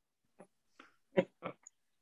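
A man laughing quietly in about five short, breathy bursts.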